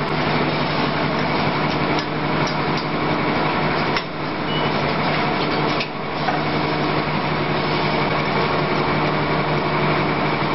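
Automatic blister packing machine running: a steady mechanical drone over a low hum, with frequent light clicks and clacks from its moving parts and brief dips in loudness every couple of seconds.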